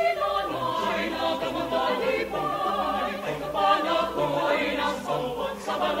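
Choir singing a cappella in several voice parts, with the upper voices holding and moving through notes over a steady pulse of short, repeated low notes in the bass.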